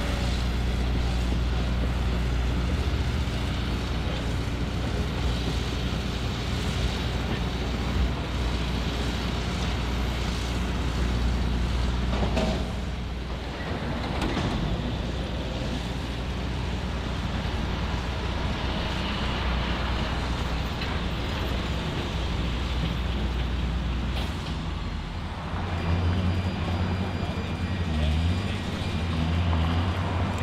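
Diesel engine of a tracked, high-rail rail-threading machine running steadily. The sound dips briefly about twelve seconds in, and near the end a different, deeper engine hum takes over.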